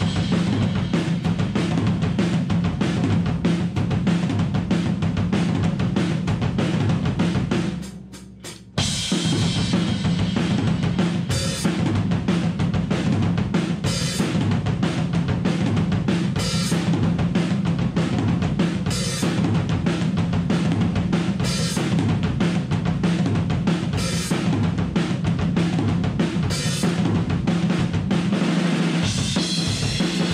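Acoustic drum kit played in a steady groove of kick drum, snare and cymbals, with a Black Beauty snare and Zildjian cymbals. The playing dips into a brief break about eight seconds in, then comes back in full.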